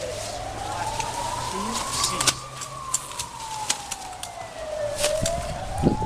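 Siren wailing with a single tone that rises slowly for about two and a half seconds, falls for about the same, then starts to rise again, with scattered sharp clicks over it.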